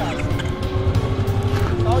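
Yamaha R3's parallel-twin engine pulling away and accelerating, its rumble growing louder about half a second in.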